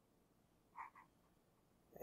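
Near silence: room tone, with two faint, very short blips close together about a second in.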